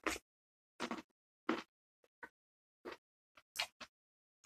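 A person biting into a whole fresh cucumber and chewing it: about eight short, crisp crunches in four seconds, unevenly spaced, with silence in between.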